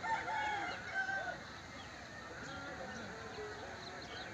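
A rooster crowing faintly once, in the first second and a half, over a low steady outdoor background.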